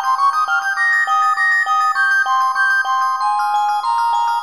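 Sopranino recorder and celesta playing a fast prelude together: high recorder notes over a quick, even run of bell-like celesta notes, struck about four to the second.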